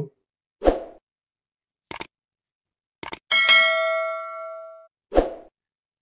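Subscribe-button animation sound effects: a short pop, two mouse clicks, then a bell ding that rings and dies away over about a second and a half, and another short pop near the end.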